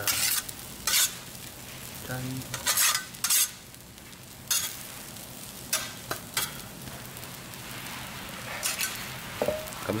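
Metal spatulas scraping and tapping on a giant iron griddle as fried rice is pressed into shape, over a steady sizzle from the hot plate. There are about eight short, sharp scrapes at uneven intervals.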